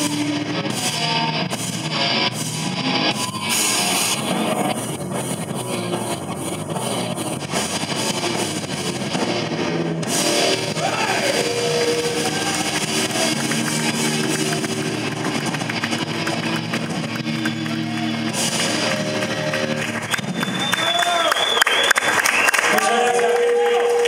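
A rock band playing live: electric guitars, bass and drums, with a singer's voice. Near the end the bass and drums drop away, leaving a high wavering guitar tone.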